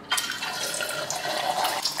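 An egg hitting very hot oil in a wok and deep-frying: a sudden start into a steady, crackling sizzle of bubbling oil.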